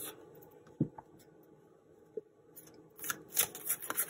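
Tarot cards being handled on a table: a single light tap just under a second in and another about two seconds in, then a run of quick card rustles and clicks near the end.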